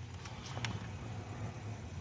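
Steady low hum of store room tone, with a few faint papery clicks in the first second as a pop-up book's cardboard cover is opened.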